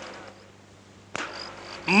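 A brief pause in a man's recorded sermon: a faint steady hum in the recording, a single sharp click a little past the middle, and his speech starting again at the very end.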